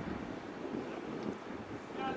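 Wind blowing on the camera microphone, an uneven low rumble with a steady hiss.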